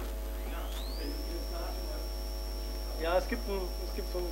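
Steady electrical mains hum, with a faint thin whistle that glides up in pitch about a second in and then holds steady.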